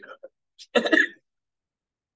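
A man clears his throat once, briefly, about three-quarters of a second in, after a trailing bit of speech.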